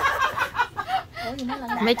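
Women laughing and chatting together, with choppy bursts of laughter mixed into their talk.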